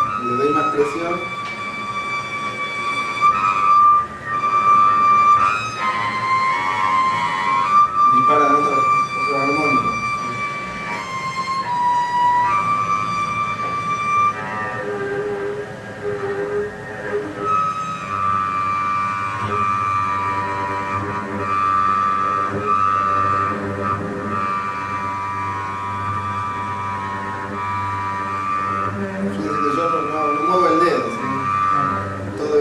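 Double bass bowed high on the strings to draw sustained harmonics and multiphonics: long held high tones, often several pitches at once, that shift to a new pitch every few seconds.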